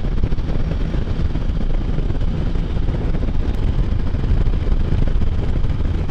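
Can-Am Spyder three-wheeled motorcycle cruising on the road: a steady engine drone mixed with wind rush over the camera microphone.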